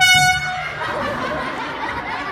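A loud, high, steady horn blast lasting about half a second, from a prop horn in a clown gag, followed by audience laughter.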